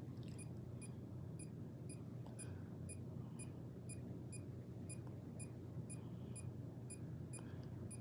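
Handheld EMF/RF meter's alarm giving a faint, even train of high-pitched beeps, about three a second, which signals a high electric-field reading. A steady low hum runs underneath.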